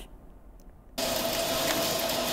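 About a second in, the steady noise of production-line machinery starts suddenly, with a constant hum-like tone through it. The machinery is a line moving masses of glass vials.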